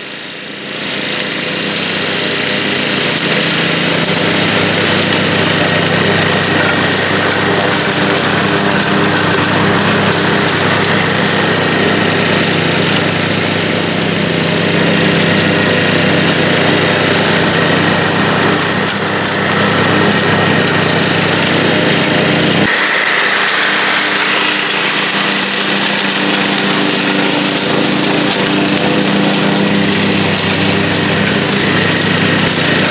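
PowerSmart 209cc gas walk-behind mower running with its blade spinning, freshly started for the first time, while it bags leaves and grass. The engine comes up to speed over the first couple of seconds, then runs steadily. About 23 seconds in, the deeper part of the sound drops away abruptly.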